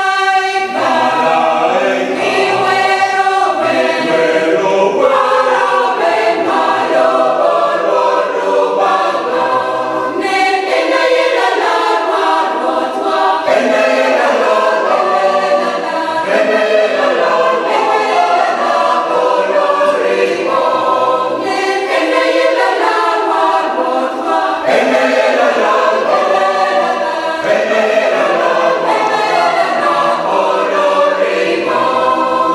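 Church choir of mixed voices singing a Christmas carol, sustained and unbroken.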